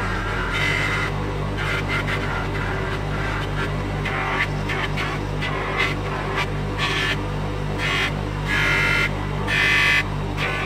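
Bench grinder motor humming steadily while a steel chisel is pressed again and again against its buffing wheels, each contact adding a short higher-pitched scrubbing sound; the longest and loudest contacts come near the end. This is the buffing stage, taking the burr off the chisel's freshly ground edge.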